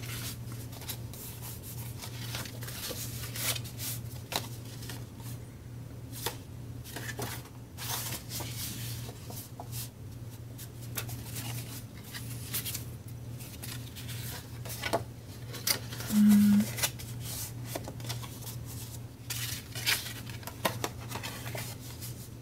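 Paper and cardstock being handled on a tabletop: irregular rustling, sliding and light tapping as sheets and folded booklets are picked up and moved, over a steady low hum. One brief low tone about two-thirds of the way through.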